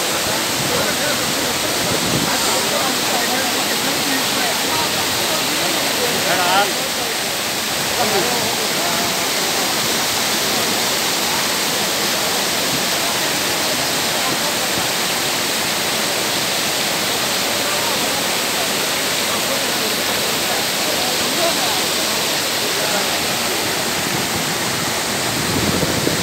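Loud, steady rush of muddy floodwater tumbling through the overflow channel of a lake that is full and spilling over its weir.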